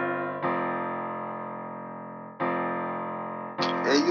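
Piano chords of a trap beat intro, a new chord struck about every two seconds and left ringing as it fades, with no drums yet. A man's voice tag comes in near the end.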